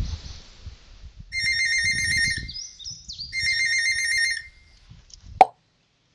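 Telephone ringing twice, each ring a rapid warbling trill, followed by a sharp loud click near the end.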